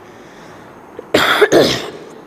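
A person coughing: two loud bursts in quick succession about a second in.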